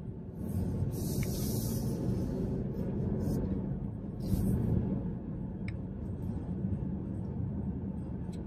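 Car cabin noise while driving: a steady low rumble of engine and tyres on the road, with a few brief soft rustles.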